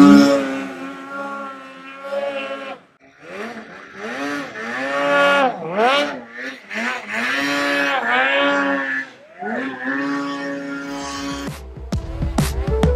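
Ski-Doo snowmobile's two-stroke engine revving up and down again and again as the rider works the throttle through deep powder, with one short steady stretch past the middle. Music with a deep bass comes in near the end.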